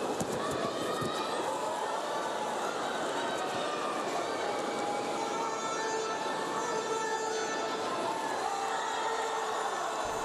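Steady crowd noise in a sports arena: many voices murmuring and calling at once, with a few longer drawn-out calls in the second half.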